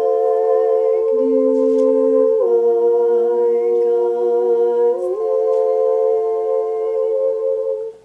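Women's voices singing a meditative canon chant unaccompanied in close harmony, several long held notes sounding together. The chord shifts twice, then stops abruptly near the end.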